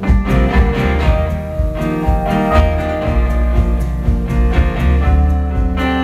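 Live band playing an instrumental passage of a slow blues song: acoustic guitar over an upright double bass, with no singing.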